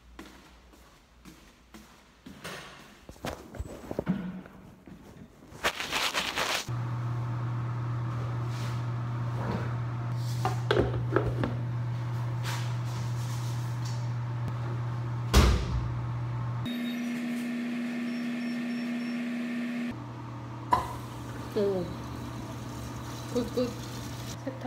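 Handling noise and a few knocks, then a steady low hum from a washing machine in a laundry room with top-loading washers, starting about seven seconds in. Several knocks sound over the hum, and one sharp, loud knock comes about fifteen seconds in.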